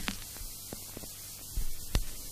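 Steady mains hum and hiss of an off-air FM radio recording in a gap with no music, with a few faint clicks and a low thump near the end.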